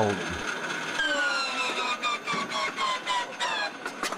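The hand-cranked inertia starter of a Boeing P-26 Peashooter whining as its flywheel spins, the whine sliding steadily down in pitch from about a second in, with faint clicks near the end.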